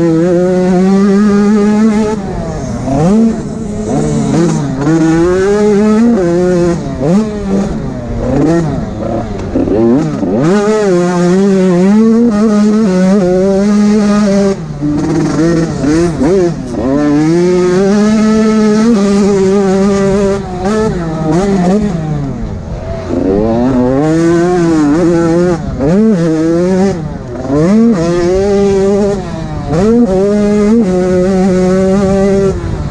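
85cc two-stroke motocross bike engine racing, its note climbing and dropping again and again as the rider accelerates, shifts and rolls off the throttle, heard from the rider's helmet camera.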